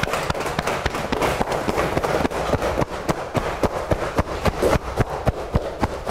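Cupped hands slapping the body in a cupping qigong self-massage, firm, short slaps worked up the arm. They form a rapid, irregular patter, several slaps a second.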